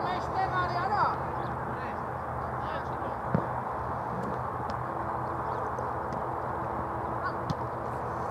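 Football match sound from the touchline: distant players shouting in the first second, then a single ball kick about three and a half seconds in, over a steady background hiss.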